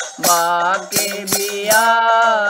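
Haryanvi devotional folk song (bhajan): a voice holding long sung notes over a steady drum beat.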